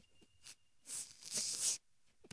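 Juvenile western hognose snake hissing: two short, sharp hisses about a second in. It is the defensive hiss of an agitated snake that does not want to be handled.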